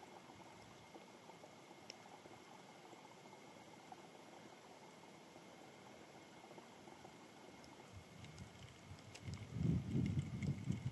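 Faint, steady hiss of open-air ambience, with a low, irregular rumble building up over the last two seconds.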